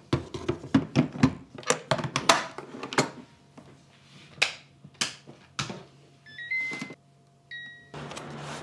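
Metal inner pot clanking as it is set into an electric rice cooker and the lid is clicked shut, a quick run of knocks and clicks. Then a few button clicks, a short rising electronic chime and a steady beep from the cooker's control panel near the end.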